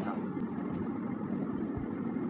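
Steady low rumble of background noise, with no clear pitch or rhythm.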